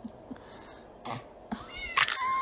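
A domestic cat meowing once near the end, a short call that rises in pitch.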